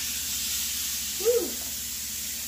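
Ground lamb sizzling in a hot skillet: a steady frying hiss.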